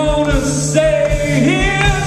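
Live rock band playing a song, with sustained sung notes over bass and a steady drum beat.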